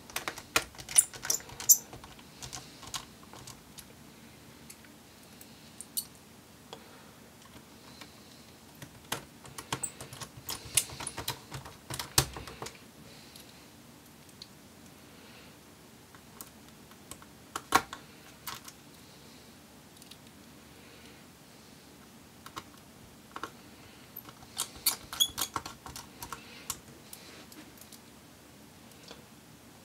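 Small clicks and light ticks of a small Phillips screwdriver turning screws into a laptop's battery, coming in irregular clusters with short gaps between them.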